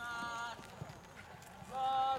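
Two short shouted calls from players on a football pitch, each held at a level pitch: one at the start and a higher one near the end.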